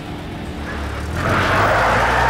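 Pickup truck pulling away: the engine's low hum comes in and grows, and tyres crunching over a gravel drive build over it about a second in.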